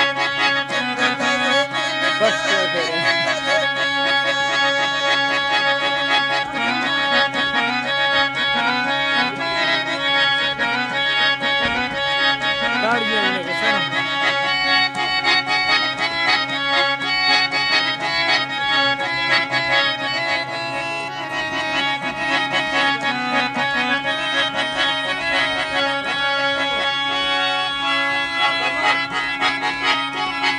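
Harmonium playing a Balochi folk melody, its reeds sounding steady held notes throughout, with a gliding melody line over them at moments.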